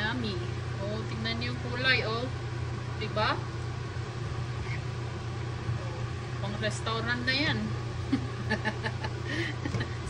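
A steady low hum throughout, with quiet speech-like voices at times, notably around two, three and seven seconds in.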